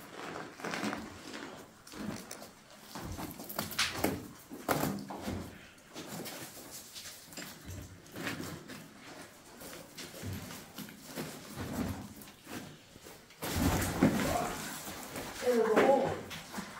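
Scattered knocks and scrapes of loose rock and gear as a caver works his way down a rope over a rubble slope in a mine, with faint, muffled voices. Near the end, louder close handling and rustling noise comes in.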